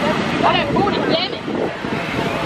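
People's voices calling out in high, short cries about half a second in and again around a second in, over steady background noise.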